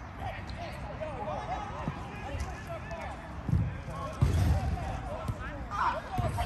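Footballers shouting and calling to each other across a small-sided football pitch, heard from the sideline, with a couple of dull low thuds a little past the middle, the second the loudest sound.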